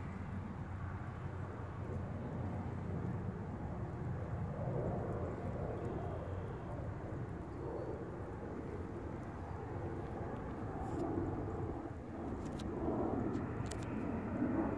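Steady low rumble of distant engine noise, swelling a little midway and again near the end, with a few faint ticks near the end.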